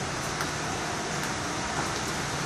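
Steady rushing background noise with a few faint ticks.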